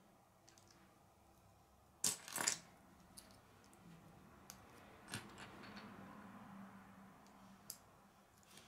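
Faint clicks of plastic Lego pieces being handled and pressed together while a minifigure is assembled, with a short louder clatter of pieces about two seconds in and single sharp clicks later.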